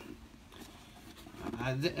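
Quiet room tone for about a second and a half, then a man begins speaking.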